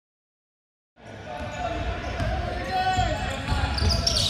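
Dead silence for about the first second, then the live sound of an indoor basketball game: a basketball bouncing on the hardwood court under indistinct voices, echoing in a large hall.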